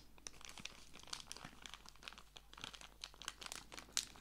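Faint, irregular crackling with many small clicks.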